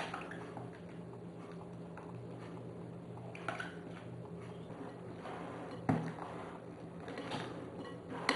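Faint handling sounds as whipped cream is emptied from a tub into a glass bowl of lemon cream and folded in: soft plops and scrapes with a few light knocks, the sharpest about six seconds in. A low steady hum lies underneath.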